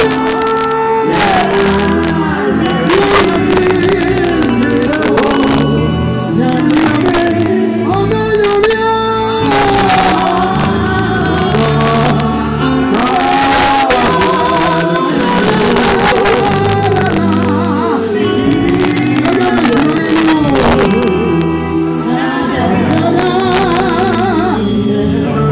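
A woman singing Ghanaian gospel into a microphone over an amplified live band, her voice gliding up and down through the phrases above a moving bass line and a steady drum beat.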